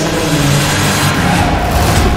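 A rushing whoosh that swells brighter toward the end, with a low held tone beneath it.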